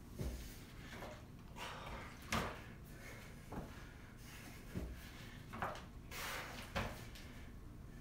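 About half a dozen dull thuds and scuffs, spaced irregularly, as feet and hands land on the gym floor during squat thrusts.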